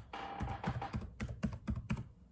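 Fingers typing: an irregular run of about a dozen quick taps and clicks.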